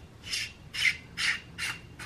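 A flashlight's threaded metal battery tube being unscrewed by hand, the threads rasping in four short, evenly spaced strokes, one for each turn of the grip.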